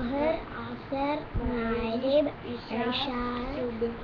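A child's voice chanting in a sing-song way, with several drawn-out, held syllables.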